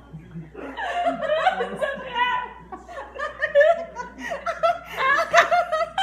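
Two women laughing hard, the laughter breaking out about a second in and continuing loudly.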